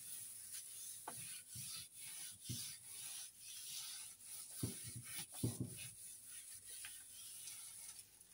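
A hand rubbing and pressing a large sheet of thin tissue paper down onto an inked print surface: soft, irregular swishing strokes of skin on paper, with a few duller presses.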